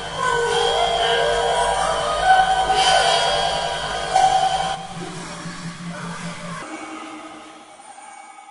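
Computer-generated electronic soundscape of held tones with slow pitch glides over a low hum, fading away over the last few seconds.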